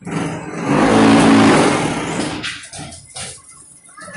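Automatic fly ash brick making machine running through a cycle: a loud mechanical noise with a steady hum that swells over the first second and dies away after about two and a half seconds.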